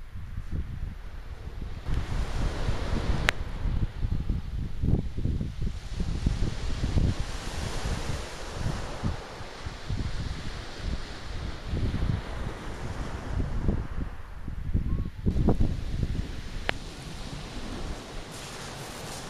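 Wind buffeting the microphone in uneven gusts over waves breaking and washing on a shingle beach. Two single sharp clicks, one about three seconds in and one near the end.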